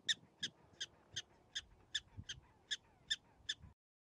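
Prairie dog barking: a run of about ten short, high-pitched calls, roughly three a second, stopping just before the end.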